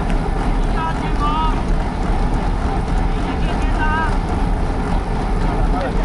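Steady wind rushing over the microphone of a camera riding along on a moving bicycle, with two short, high, wavering tones, about one second and about four seconds in.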